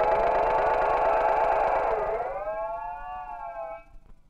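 Modular synthesizer voice with many overtones, sliding in pitch like a siren: it dips about two seconds in, rises again, holds, then fades out near the end.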